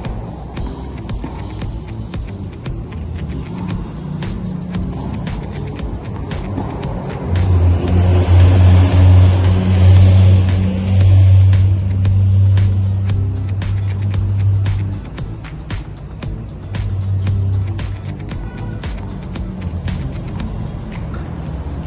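Background music, with a low motor-vehicle engine hum that swells in about seven seconds in and fades out about fifteen seconds in, as of a vehicle passing.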